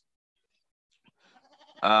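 Near silence for about a second, then a man's drawn-out hesitant 'uh' at a steady pitch near the end.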